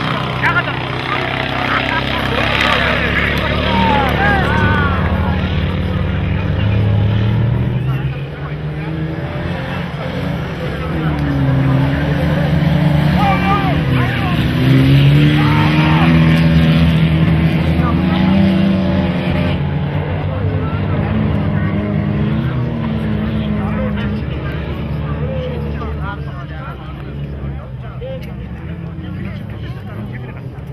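Engines of off-road race vehicles running hard, their pitch rising and falling as they rev, with people's voices over them. The sound eases about eight seconds in, builds again, and fades somewhat near the end.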